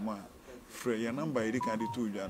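A man speaking, with two short electronic beeps near the end, the second a little lower in pitch than the first.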